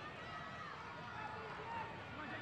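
Football match field sound from a sparsely filled stadium: scattered distant voices calling out over a steady background hiss.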